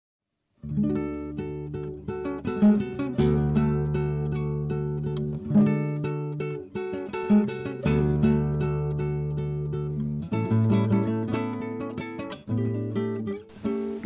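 Acoustic guitar music, plucked, starting about half a second in, with the chord changing every two seconds or so.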